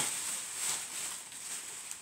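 Soft rustling of packaging being handled as an item is pulled out of a grab bag, over a steady high hiss.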